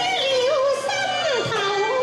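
A woman singing a Chinese opera-style melody into a microphone, one sustained vocal line with wide vibrato that slides steeply down about halfway through.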